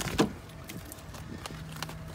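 Handling noise at a car's open driver's door: a sharp knock just after the start and a lighter click near the end, with a faint low steady hum coming in about a second and a half in.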